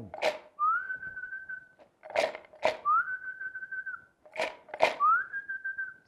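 A man whistling three times. Each time one or two short sharp noises come first, then a note that slides up briefly and holds steady for about a second.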